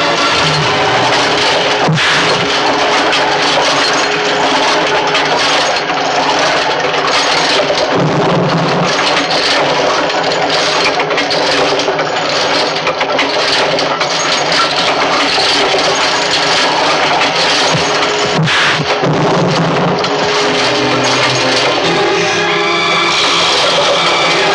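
Dense, loud film soundtrack for a fistfight: background music mixed with clattering, rattling sound effects and sharp crack-like hits, two of them standing out about 2 seconds in and again near the three-quarter mark.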